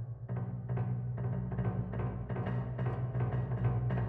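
Piano playing loudly in its low register: a deep bass sound is held throughout while sharp notes or chords are struck again and again, about three a second.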